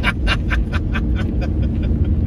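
A man laughing in quick, even 'ha' pulses that die away about a second and a half in, over the steady road and engine noise of a car cabin at freeway speed.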